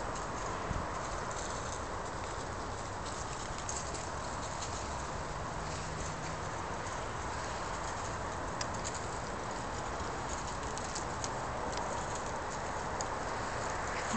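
Squirrels scampering over dry leaf litter and wood chips: scattered light ticks and rustles of small feet over a steady outdoor hiss.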